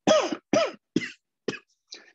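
A man coughing four times in quick succession, about half a second apart, each cough a little weaker than the one before.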